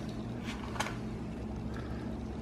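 A black plastic measuring cup scooping crumbly oat bar mix in a glass mixing bowl, giving a couple of faint scrapes about half a second in, over a steady low hum.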